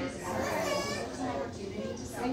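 Background voices in a busy deli dining room, with a child's high-pitched voice rising above the chatter about half a second in.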